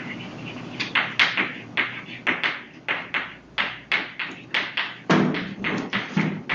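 Chalk writing on a blackboard: a quick run of sharp taps and short scrapes, about three strokes a second, starting about a second in.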